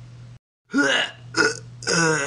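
A man's voice making three short non-speech vocal sounds in quick succession, starting about two-thirds of a second in, over a low steady room hum.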